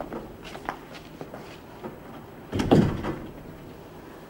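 A cell door shut with a heavy thud about two and a half seconds in, after a few faint clicks and shuffles.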